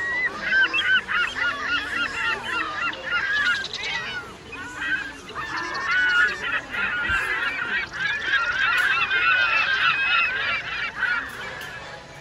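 A flock of birds calling: many short, overlapping calls, growing sparser near the end.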